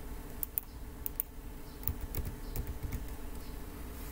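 Several sharp, irregular clicks from computer controls at a desk, over a low steady hum.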